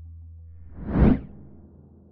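A whoosh sound effect for the logo animation: one swell that builds, peaks about a second in and quickly dies away, over a fading low musical tone.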